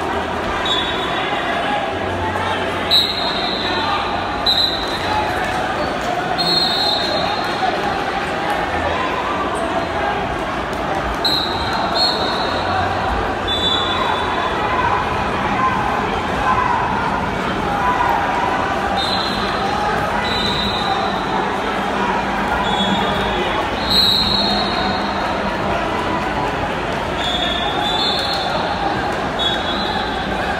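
Crowd chatter and shouted voices echoing through a large sports hall. Short, high-pitched squeaks of wrestling shoes on the mats come every few seconds, often two close together.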